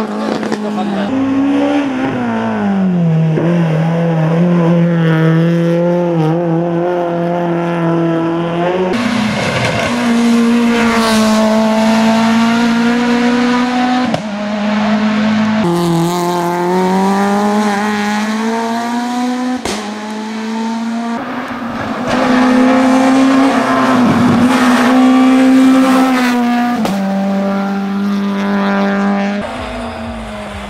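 Citroen Saxo VTS hillclimb race car's four-cylinder engine pulling hard at high revs as it climbs. The pitch rises through each gear and drops at every shift or lift for a bend, over several separate passes.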